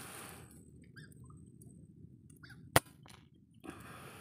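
A single sharp rifle shot about three-quarters of the way through, much louder than the faint background around it.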